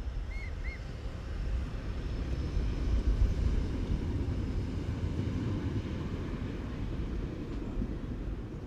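Low, gusty rumble of wind on the microphone, swelling about three seconds in. Two brief faint high chirps sound near the start.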